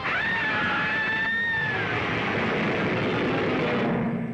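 A woman's long high-pitched scream that starts suddenly, holds for about two seconds and falls away, over a loud rushing noise.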